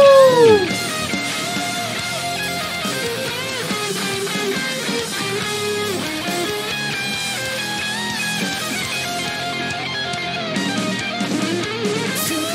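Hard rock band playing an instrumental section with no vocals, led by electric guitar. A loud note that rises and falls in pitch opens it.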